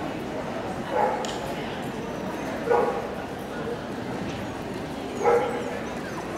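A dog barking three times, a second or two apart, over the steady murmur of a crowd.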